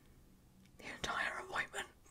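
Near silence, then a woman whispering softly from about a second in.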